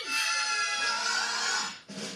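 Music from a movie trailer playing through a television's speakers, with a brief break near the end before a new passage starts.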